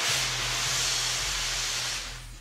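Stage CO2 smoke jets hissing, a steady, loud hiss with a low hum underneath.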